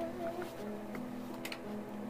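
Buzz Lightyear Signature Collection action figure playing a sound clip through its small built-in speaker: steady, music-like electronic tones.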